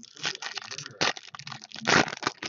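Foil trading-card pack being torn open by hand, the wrapper crinkling and crackling in a quick run of sharp crackles, loudest about a second in and again near the end.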